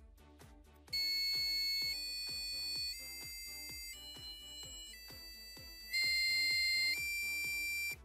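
Passive buzzer on an Arduino Uno playing a programmed scale of seven musical notes (A to G), each a steady electronic tone lasting about a second, starting about a second in. Quiet background music with a steady beat runs underneath.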